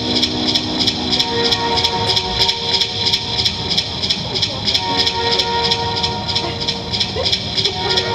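Live indie rock band playing: electric guitars and bass holding chords over drums with a steady cymbal beat, heard loud through the club's PA.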